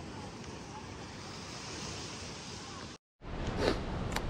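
Ocean surf washing onto a sandy beach with some wind, a steady hiss; it cuts off suddenly about three seconds in, and a louder, uneven noise follows.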